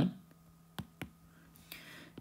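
Two short, faint clicks about a quarter of a second apart over a faint low hum, then a short breath near the end.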